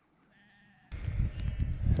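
Near silence for about the first second, then wind rumbling on the microphone with a sheep bleating faintly.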